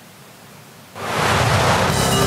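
A quiet hiss, then about a second in a loud, rising whoosh of rushing noise: a news-broadcast transition sound effect that runs into the headlines music at the very end.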